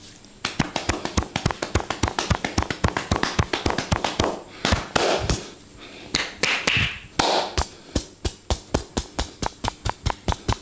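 Hands tapping and slapping a man's head in a fast percussive head massage, about five sharp taps a second starting just after the beginning, with a few brief rubbing rustles in the middle.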